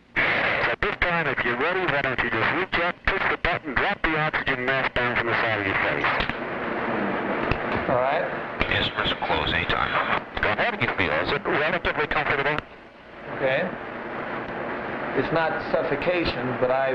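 Talk over an intercom that sounds like radio, with frequent sharp clicks through the first six seconds.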